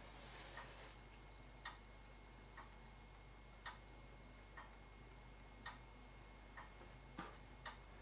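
Near silence with faint, regular ticks, about one a second, like a clock ticking.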